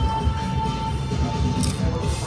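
Background music with a steady beat and a held tone.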